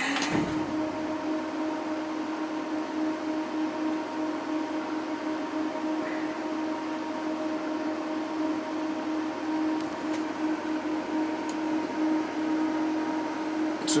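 HP 8568A spectrum analyzer switched on: its cooling fan starts abruptly and runs with a steady hum and a rush of air.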